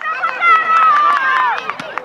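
Spectators shouting: one long high-pitched yell that falls slowly in pitch and breaks off about a second and a half in, over other overlapping voices and a few sharp knocks.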